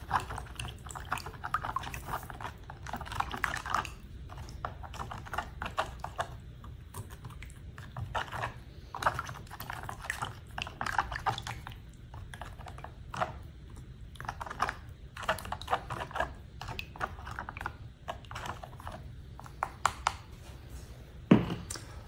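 Potassium chloride salt substitute being poured and stirred by hand into water in a plastic tub: irregular bursts of scraping and clicking of fingers and grains against the plastic, with water swishing.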